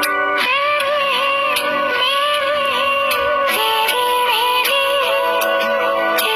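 A woman singing a Hindi film song in long, ornamented notes over a backing track with a regular beat. Her voice comes in about half a second in.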